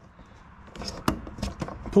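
A quick run of sharp plastic clicks and knocks, starting about two-thirds of a second in: fingers working the locking clip of a wire-harness connector on a washing machine's plastic control console.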